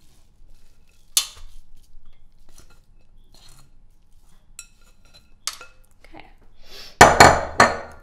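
Dishware and utensil clatter as sticky batter is scraped with a metal spoon from a glass mixing bowl into a metal baking pan: a few sharp clinks scattered through, then three loud clanks close together near the end.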